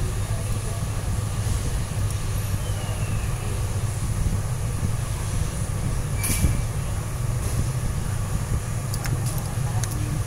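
Steady low hum with hiss behind it, unbroken throughout, with a light click about six seconds in and a couple more near the end as small phone parts are handled.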